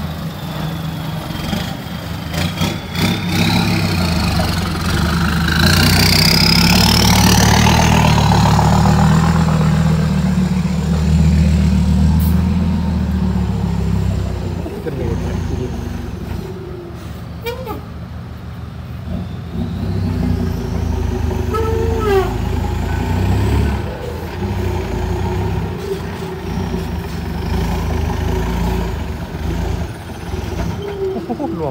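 Heavy diesel dump truck engines running and revving under load, loudest in the first half, with a high whine that rises and falls over the engine noise.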